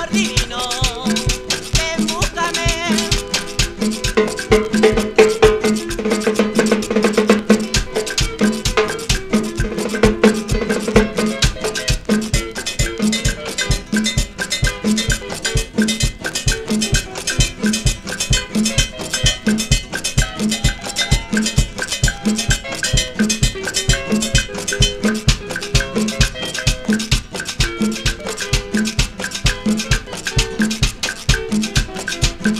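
A 1970s Peruvian guarachón dance record from a 45 rpm vinyl single: a Latin band with a steady, evenly repeating percussion beat.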